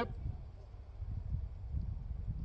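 Low, uneven rumble of wind buffeting the microphone outdoors.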